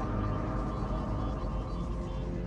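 A steady low rumble of film sound design, with faint held orchestral notes from the score over it.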